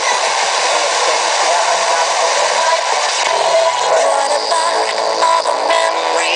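Music broadcast by 88.7 Vibe FM, Malta, received by sporadic-E skip on a portable FM receiver and played through its small speaker. The sound is thin, with little bass.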